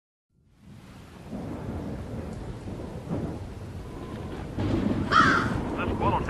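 Thunderstorm sound effect fading in from silence: rolling thunder over rain, with a louder burst about five seconds in.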